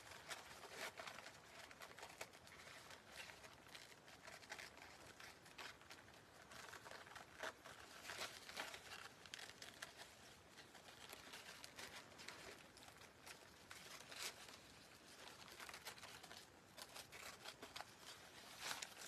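Faint rustling and crinkling of a thin paper napkin being cut with small scissors, with irregular small crackles and snips throughout.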